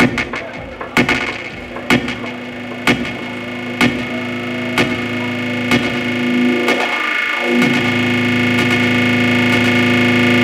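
Electronic dance music played by a DJ through a club sound system, in a breakdown: a sustained distorted synth chord swells steadily louder, with a sharp hit about once a second that drops out just past the middle, and a filter sweep through the chord near the end.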